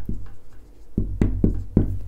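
Dry-erase marker writing on a whiteboard: a quick series of short strokes and taps as a word is written, over a low steady hum.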